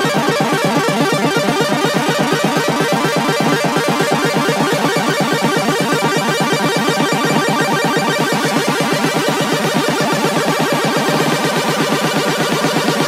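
Minimal techno music: a fast, steady pulsing synth pattern with the bass filtered out.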